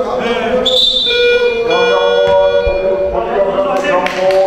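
A gym's electronic buzzer sounds one steady tone for about two and a half seconds during a stoppage in a basketball game, with players' voices on the court.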